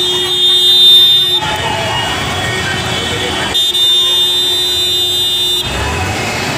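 A vehicle's steady warning tone, like a horn, sounding twice: once for the first second and a half, then again for about two seconds near the end, over the noise of a crowd.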